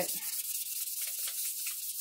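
Wet sanding: a chert fossil rubbed back and forth on wet 1000-grit wet/dry sandpaper, giving a steady, gritty hiss.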